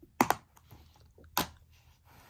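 Plastic Blu-ray case being handled and lifted off the carpet: a sharp double click about a quarter second in and another click about a second and a half in.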